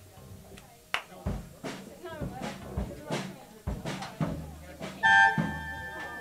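A rock band noodling on stage between songs: scattered drum hits and low bass notes, with voices chattering and a held note sounding about five seconds in.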